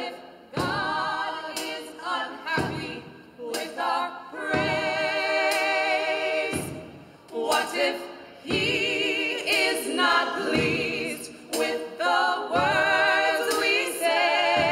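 A small gospel choir singing a cappella in harmony, in short phrases with vibrato on the held notes.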